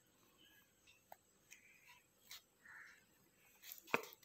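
Faint scratching of a pencil marking small crosses on notebook paper: a few short, irregular strokes, with a sharper tick near the end.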